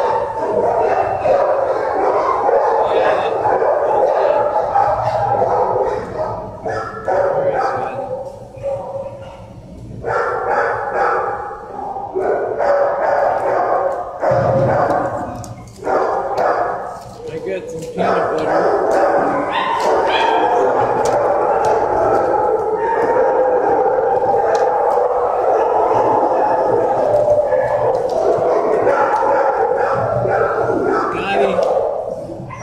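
Many dogs barking and yipping together in shelter kennels, a steady loud din that eases off briefly twice, about a quarter of the way in and again around halfway.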